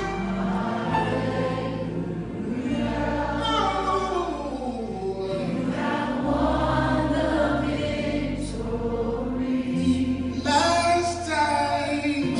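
Live gospel worship music: a group of singers holding sustained sung notes over a band with bass, keyboard and guitars.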